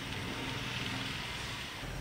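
Steady outdoor background noise: an even hiss with a low rumble that grows louder near the end.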